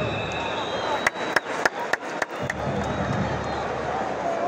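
Large football stadium crowd din, with voices carrying through it. About a second in comes an irregular run of half a dozen sharp cracks over about a second and a half.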